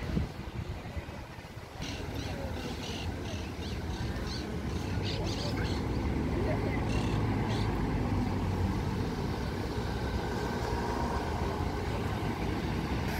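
Street traffic with a city bus's engine running close by: a steady low hum that grows a little louder after about two seconds.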